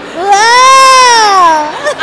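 A woman's long, high, drawn-out playful vocal sound, one continuous loud note that rises and then falls in pitch, lasting about a second and a half.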